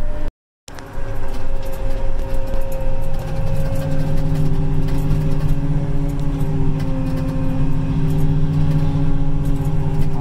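Apache self-propelled sprayer's diesel engine running at a steady speed while spraying, heard from inside the cab. The sound cuts out completely for a moment about half a second in.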